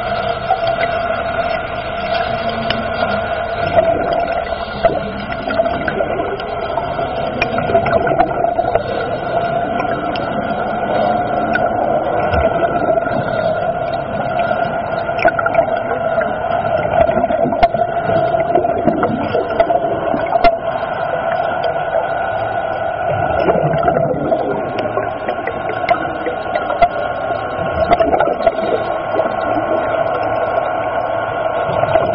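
Steady underwater drone with two fixed tones, one an octave above the other, under a crackling hiss and scattered faint clicks, recorded beside a ship's submerged hull.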